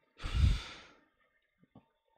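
A man sighs, one long breath out into a close microphone that lasts under a second; the air blowing on the mic adds a low rumble under the hiss. A couple of faint mouth clicks follow.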